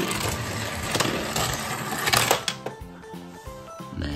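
A die-cast toy car rolling and clattering down the plastic ramps of a spiral parking-garage toy tower for about two and a half seconds, over background music.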